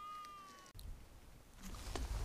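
A faint single mewing animal call, about a second long, holding one pitch then sagging slightly before it stops, followed by a low rumble.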